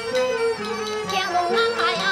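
Teochew opera accompaniment ensemble playing a melody that moves in steps. Near the end, a voice with wide vibrato starts to come in.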